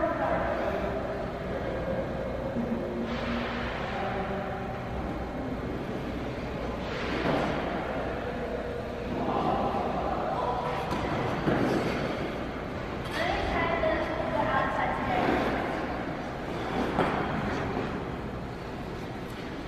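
Figure-skate blades scraping across rink ice, about six scrapes a few seconds apart, over a steady low hum.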